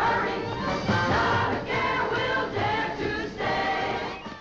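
Musical number from a 1950s film soundtrack: a group of voices singing together over band accompaniment.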